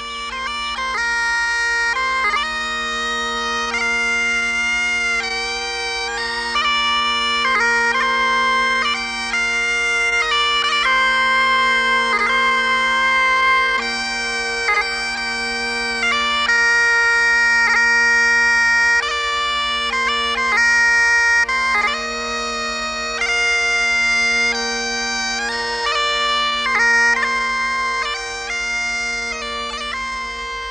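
Scottish bagpipes playing a slow tune. The chanter moves from note to note over a steady drone that holds one pitch, and the music fades down near the end.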